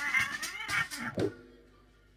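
A shrill, wailing screech that wavers in pitch, then drops sharply and cuts off about a second and a quarter in, leaving a faint fading echo.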